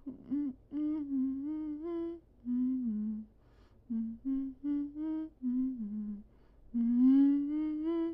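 A person humming with closed lips: a string of short hummed notes that step up and down in pitch, broken by brief pauses, ending in a longer rising hum near the end.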